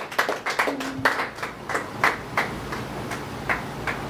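Small audience clapping: many scattered claps that thin out to a few by the end.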